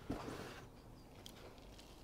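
Faint rustle of light, dry sieved compost being scooped and spread by gloved hands into a plastic cell tray: a soft swish at the start, then a few small ticks.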